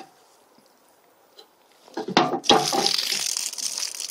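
After about two seconds of near quiet, loud rustling and crunching starts and runs on: movement through dry leaf litter, with the phone being handled.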